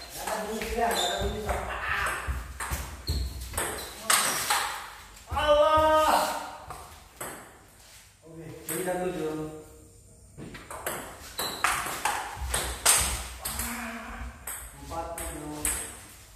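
Table tennis ball clicking off paddles and the table in quick back-and-forth rallies. A break about halfway through holds a couple of short calls from the players.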